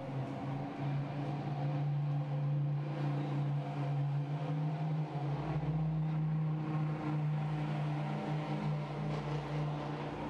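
Steady mechanical hum of an engine running, holding a low even pitch, with a deeper rumble joining about five seconds in.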